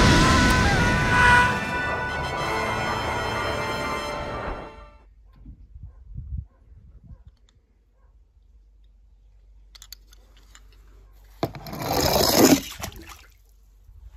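Film soundtrack music, fading out about five seconds in, followed by faint small knocks. Near the end comes a sudden rush of noise lasting about a second and a half: a die-cast toy car splashing into a swimming pool.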